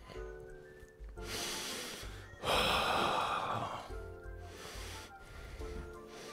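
A man lets out a heavy sigh lasting over a second, about two and a half seconds in, reluctant before a hard set of dumbbell lunges. Background music with a steady beat plays underneath.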